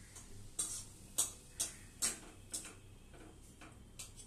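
A series of light, sharp ticks or clicks, roughly two a second and not quite evenly spaced.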